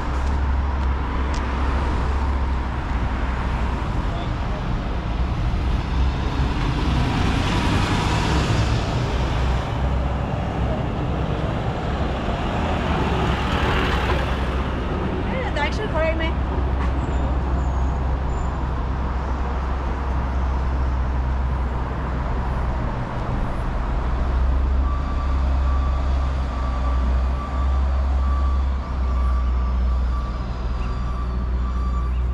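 Traffic on a multi-lane city road: a steady low rumble, with vehicles swelling past about a quarter and again halfway through. Near the end a truck's reversing beeps start up, a repeated high beep.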